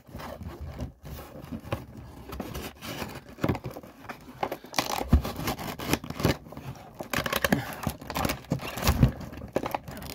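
A cardboard and plastic blister package being worked open with a hand tool: irregular scraping, crinkling and small clicks, with a couple of dull knocks about halfway and near the end.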